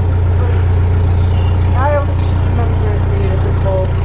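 Narrowboat engine running steadily, a deep even hum with no change in speed.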